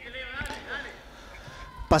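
Faint, high-pitched voices of children calling out on a youth football pitch, heard as field ambience.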